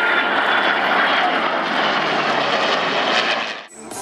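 Military jet aircraft flying past: loud, steady engine noise that cuts off suddenly near the end.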